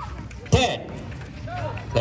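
Basketball crowd voices, with a sudden loud sound about half a second in.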